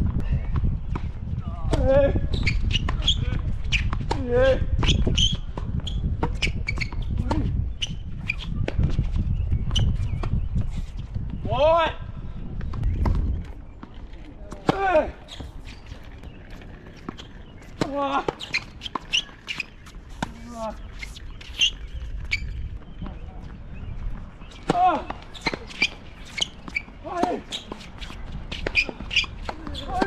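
Tennis rally on a hard court: sharp racket strikes and ball bounces throughout, with short voice sounds now and then between the shots. A low wind rumble on the microphone lasts for roughly the first half, then stops suddenly.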